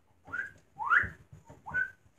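Whistling: three short whistled notes, the middle and last ones sliding upward in pitch.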